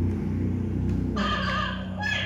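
Small motor inside a Huggy Wuggy dancing plush toy whirring steadily as it twists the toy back and forth. A thin, higher-pitched sound from the toy comes in about a second in.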